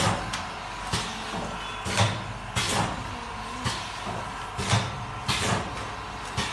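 Automatic liquid pouch filling and sealing machine running through its cycle: a sharp clack about once a second as the sealing and cutting jaws close and a filled sachet is released, over a steady motor hum.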